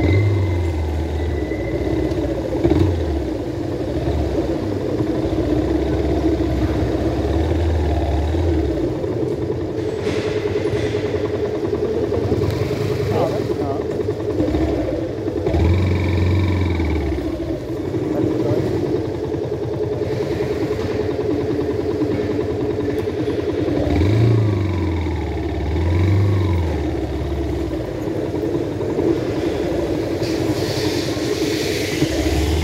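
Motorcycle engine running at low speed inside a parking garage, with a few brief throttle rises and falls over its steady note.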